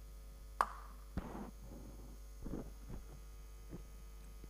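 A few faint clicks and taps from a small object being handled: one sharp click about half a second in, another a second later, then softer taps, over a steady low mains hum.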